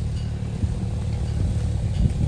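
A steady low rumble with no clear events in it.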